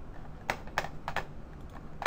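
Three quick, sharp clicks at a computer about half a second in, a third of a second apart, then a louder click at the very end, over a faint low hum of room noise.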